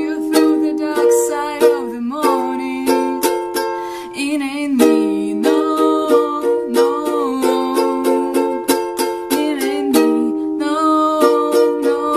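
Ukulele strummed in a steady rhythm of chords, with a woman's voice singing along over the strumming.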